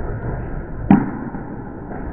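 Steady low rumble of a candlepin bowling alley, with one sharp knock about a second in.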